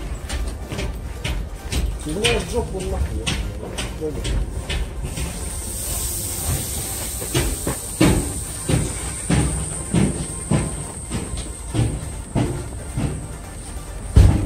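Footsteps on a railway station platform at a walking pace of nearly two steps a second, with a low rumble and people's voices around. A steady high hiss comes in about halfway through.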